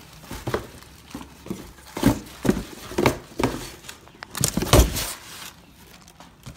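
Footsteps and handling noise: a run of soft, irregular knocks roughly two a second, with a louder cluster near the end, and a little crinkling of plastic packing.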